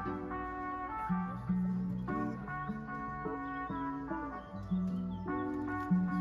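Instrumental background music: a melody of held notes over a lower line, the notes changing about every half second.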